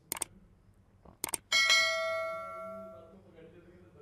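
A mouse click, then a quick double click and a bright bell ding that rings and fades over about a second and a half: the sound effect of a subscribe-button and notification-bell animation.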